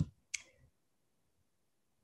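Two short, sharp clicks a third of a second apart, followed by dead, gated silence.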